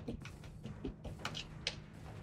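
Scattered light clicks and taps, about six in two seconds, as a paintbrush is handled against the water cup and brush jar on the painting table, over a faint, steady low hum.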